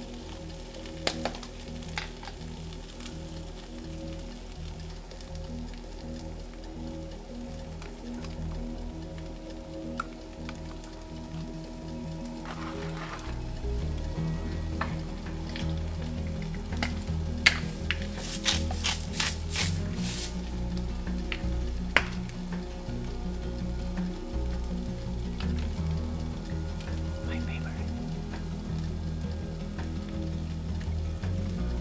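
Rice and black beans (gallo pinto) sizzling as they fry in a skillet, with a wooden spoon stirring them. A quick run of sharp clicks comes about two-thirds through as seasoning is shaken in from a bottle.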